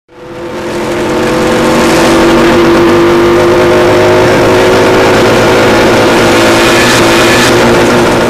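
A pack of small motorcycles riding together, their engines running hard in a loud, steady din. It fades in over the first second.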